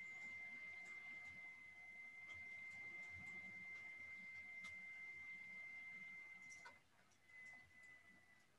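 Faint, steady high-pitched tone at one unchanging pitch that wavers and breaks up near the end, with a few faint clicks.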